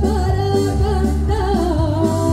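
A woman singing while playing a piano accordion: long sung notes with vibrato over sustained accordion chords and bass.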